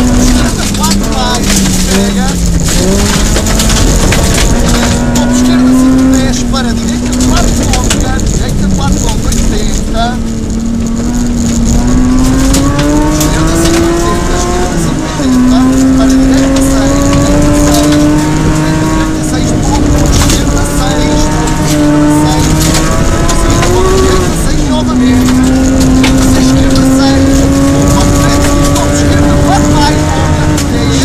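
Rally car engine at high revs, heard from inside the cabin, its pitch climbing under acceleration and dropping abruptly at gear changes about halfway through and again near 25 s, over steady road noise from the dirt road.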